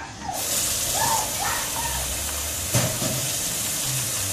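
Water running steadily from a kitchen tap, starting abruptly a moment in, with a single click near the end.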